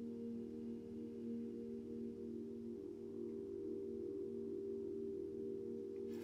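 Soft ambient background music: a steady drone of a few sustained low tones with a slow waver, in the manner of a singing bowl.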